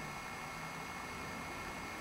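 Steady low hiss of room tone and recording noise, with no distinct sound.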